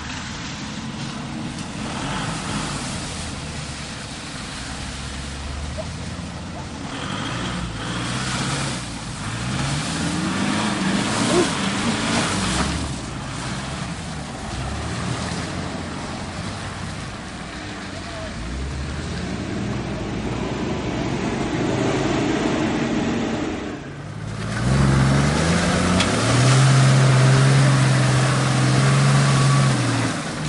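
Off-road 4x4 engines working through deep mud, revving up and easing off again and again as the vehicles climb ruts. About three quarters of the way through the sound breaks off and comes back louder, an engine held at high revs.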